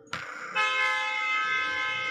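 Car horn sounding in one long held blast that comes in suddenly near the start.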